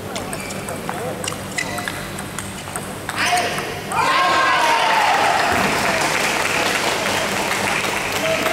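Table tennis ball clicking back and forth off the bats and the table in a rally. From about four seconds in, loud sustained cheering and shouting with applause after the point.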